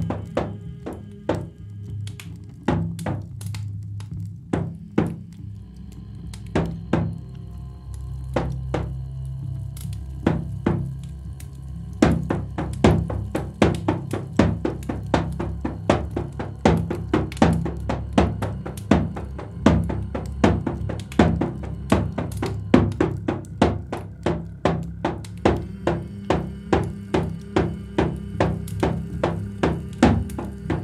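Live experimental performance music: a steady low hum with sharp drum strikes over it, a few scattered hits at first, then settling about twelve seconds in into a regular beat of about two a second, with faint held tones higher up.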